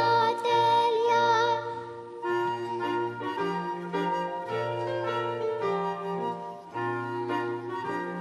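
A young girl sings a solo line into a microphone with strong vibrato for about the first two seconds; then a small ensemble plays an instrumental passage, a woodwind melody over a bass line with marimba.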